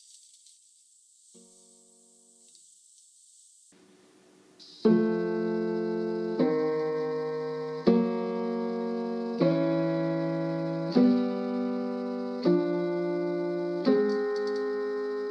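Piano intervals for an aural tuning test: a faint interval near the start, then, from about five seconds in, thirds and sixths struck one after another about every one and a half seconds, each left to ring, moving chromatically across the keyboard. The sequence shows how one out-of-tune note makes the thirds that use it break the even progression of fast beats.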